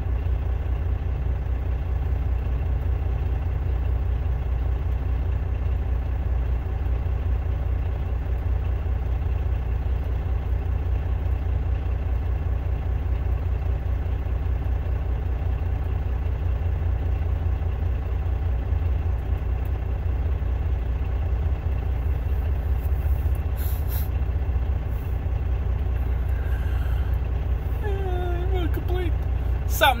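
Semi truck's diesel engine idling: a steady, even low rumble heard from inside the cab.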